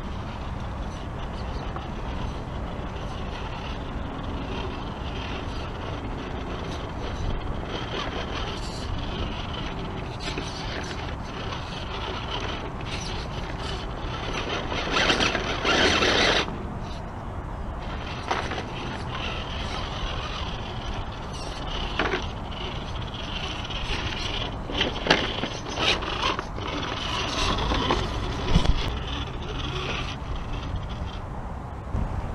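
Axial SCX10 radio-controlled rock crawler's electric motor and geared drivetrain whirring as it crawls over rough stone, with tyres scrabbling and scraping on the rock. The sound gets louder for about a second and a half around fifteen seconds in, and there are several sharp knocks later on as the chassis hits the rocks.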